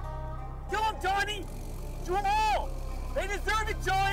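Chicken clucking calls, each rising and falling in pitch: two short calls about a second in, one longer call around two seconds, then a quick run of short clucks near the end. Quiet background music and a low hum run underneath.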